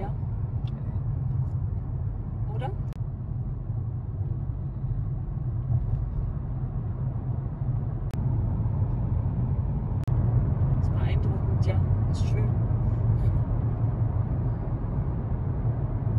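Steady low drone of engine and tyre noise heard inside a car's cabin at motorway speed, growing louder about ten seconds in as the car runs through a road tunnel.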